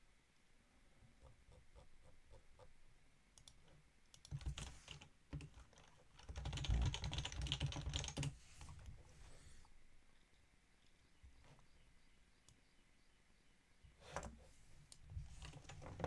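Computer keyboard typing in bursts of keystrokes: a short run about four seconds in, a longer, louder run from about six to eight seconds, and another brief run near the end.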